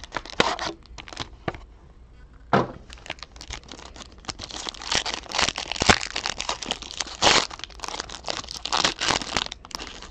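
Foil wrapper of a 2018-19 Upper Deck SP Game Used hockey card pack being crinkled and torn open by hand: scattered crackles at first, then a dense run of crinkling and tearing through the second half.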